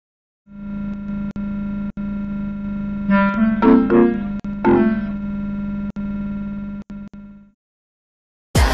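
Electronic synthesizer intro: a steady low drone that drops out abruptly several times like a glitch, with a short run of higher synth notes about three to five seconds in. It fades out shortly before the end.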